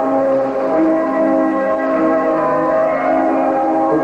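Floor exercise accompaniment music: several notes held together as slow, sustained chords that shift a couple of times.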